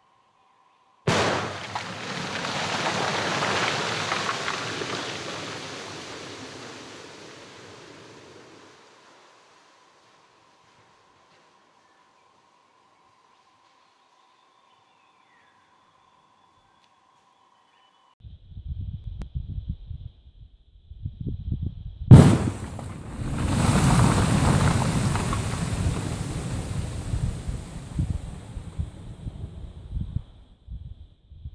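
Explosive charge blasting shut the entrance of an old mine adit: a sudden blast about a second in, then rumble dying away over several seconds as the ground caves in. A second, sharper and louder crack comes about 22 seconds in, again followed by a long rumble, with low buffeting on the microphone just before it.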